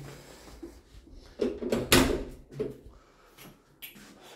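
An apartment door being shut, with a sharp knock about two seconds in and a short click near the end.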